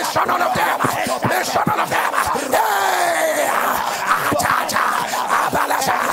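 Loud, fervent prayer: voices shouting and crying out together over background music, with one long cry falling in pitch near the middle.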